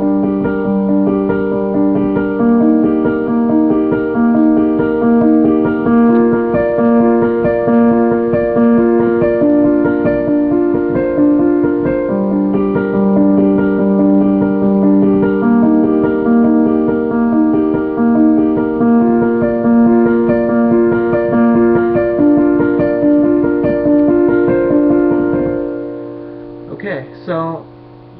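Piano playing a fast, evenly repeating four-note broken-chord figure over and over, shifting to a new chord every few seconds. The notes stop about two seconds before the end and ring away, and a voice comes in briefly. The recording is thin and dull, made through a laptop microphone.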